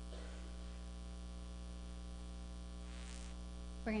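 Steady electrical mains hum, a low buzz with a stack of overtones, with two faint brief noises, one just after the start and one about three seconds in. A woman's voice begins at the very end.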